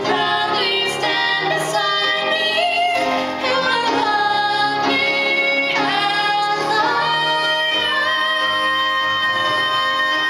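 Solo female voice singing a Broadway show ballad with vibrato, accompanied by grand piano. From about seven seconds in she holds one long note.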